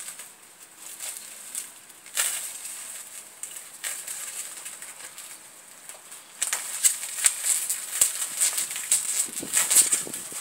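Clear plastic wrapping crinkling and crackling as it is cut and pulled open by hand, in scattered bursts at first, then denser and louder from about six seconds in.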